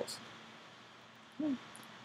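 A pause in a lecturer's voice-over: faint steady room hiss, broken about a second and a half in by one short low hum-like sound from the speaker's voice, its pitch rising then falling.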